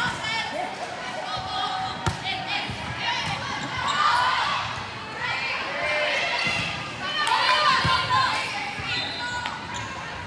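Indoor volleyball rally: sneakers squeaking on a hardwood gym floor, with the ball struck sharply about two seconds in and players' voices calling out.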